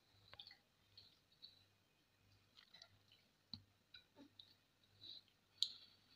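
Near silence broken by faint, scattered clicks and smacks of children eating roti and curry by hand, with one sharper click near the end.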